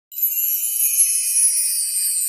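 A high, shimmering sparkle sound effect of bell-like chimes, starting suddenly and ringing on steadily with no low tones, accompanying an animated logo.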